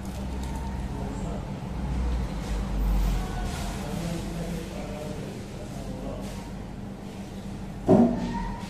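Room ambience: a steady low rumble with faint background music and distant voices, and one short sharp knock near the end.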